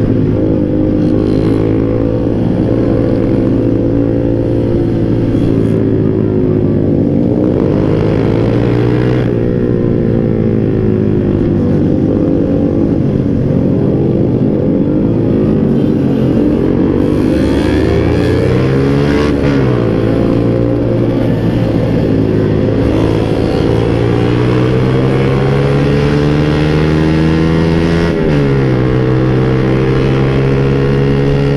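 Motorcycle engine running under way, its pitch rising and falling with the throttle. Near the end it climbs steadily for several seconds, then drops sharply as the throttle is closed.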